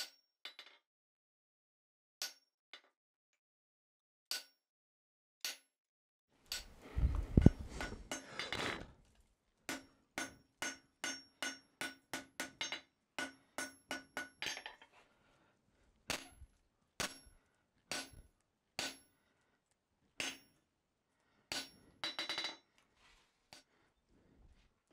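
Hand hammer striking red-hot steel on an anvil, each blow with a short metallic ring: a few spaced blows, then a run of quick strikes at about two to three a second, then slower single blows about a second apart. A louder, duller clattering stretch comes about seven seconds in.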